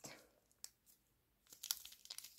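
Plastic wrapper of a Kinder Chocolate bar crinkling in the fingers: nearly quiet at first with one faint tick, then a quick run of small crackles about one and a half seconds in.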